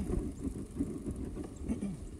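Mountain bike rolling over a grassy dirt trail: a steady low rumble of tyres on the ground, with small irregular knocks and rattles from the bike.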